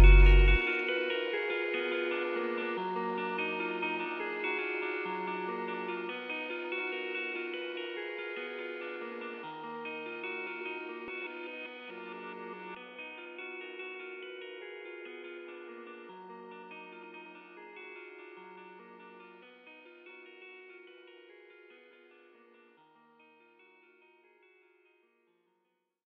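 Outro of a trap instrumental: the drums and deep bass cut out about half a second in, leaving a plucked guitar melody drenched in effects and echo that fades out slowly over about twenty seconds.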